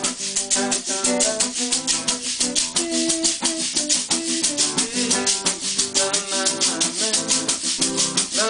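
Instrumental music without singing: an acoustic guitar picking a melody over a fast, even maraca rhythm.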